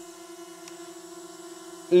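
MJX Bugs 19 EIS mini drone hovering, its propellers giving a steady, even hum.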